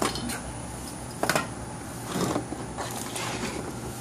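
Handling noises: a few short knocks and clatters of things being moved about as a plastic gallon jug of gear oil is picked up, the loudest about a second in, over a low steady hum.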